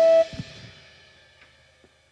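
Rock band's final held note cut off abruptly about a quarter second in, with a low thud, as the song ends. The cymbals then ring out and fade away.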